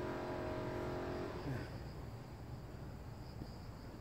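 A motor vehicle's engine hums steadily, then fades out with a falling pitch about a second and a half in, over a low rumble. A pulsing insect buzz runs high in the background.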